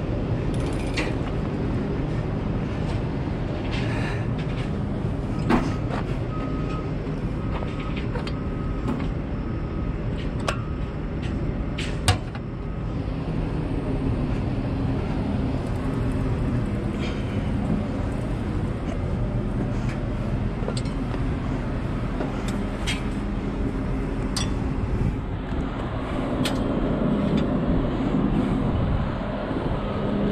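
Heavy diesel engine idling steadily, with scattered metal clicks and knocks from climbing onto a tracked dozer, one sharp knock about twelve seconds in. A row of short high beeps sounds for a few seconds early on, and the engine noise grows louder near the end.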